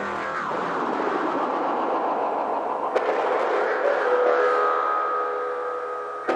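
Electro track in a beatless breakdown. The drums have dropped out, leaving a sustained synth noise wash that sweeps down in pitch at the start. Held synth tones come in about four seconds in.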